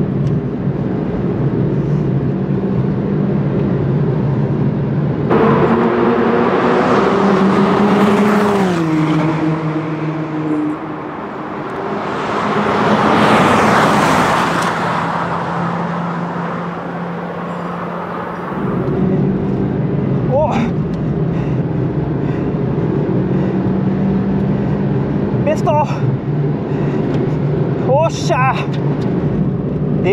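Suzuki Swift Sport's turbocharged four-cylinder engine running hard at full throttle with an upgraded turbo, heard from inside the cabin as a steady engine note. For a stretch in the middle it is heard from trackside instead: the engine note drops in pitch as the car goes by, followed by a swell of passing noise.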